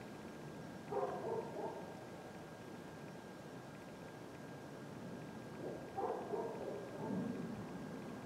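A man's voice calling out from some way off, answering "No" about a second in and calling again around six seconds in, over faint background air with a thin steady whine.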